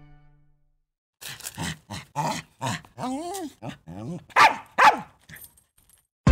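A small dog barking and yipping in a quick series of about ten short calls, with one wavering whine in the middle. The two loudest barks come near the end.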